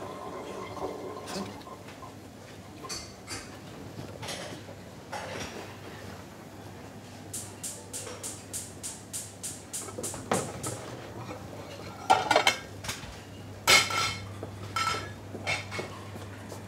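Dishes and cutlery being handled at a restaurant kitchen sink: plates and utensils clink and clatter as they are moved and set down. There is a quick run of light clinks in the middle and a few louder clatters later on, over a low steady hum.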